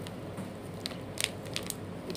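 Packaging being handled in a supermarket shopping trolley: a few brief crackles and clicks about a second in, over a steady low hum of store room tone.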